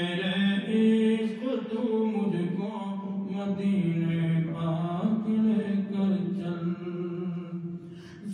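A man's unaccompanied voice chanting an Urdu naat, drawing out long held notes that sink lower and rise again, with no clear words. There is a short break for breath near the end.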